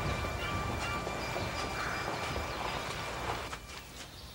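Drama soundtrack music dying away into faint outdoor ambience with a few soft knocks, dropping quieter about three and a half seconds in.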